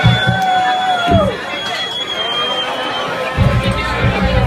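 Club crowd cheering and yelling at the end of a punk rock set, with one long held yell in the first second or so. A steady high whine runs under it until near the end, and a low rumble comes in near the end.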